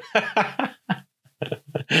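A man laughing in short breathy bursts that trail off.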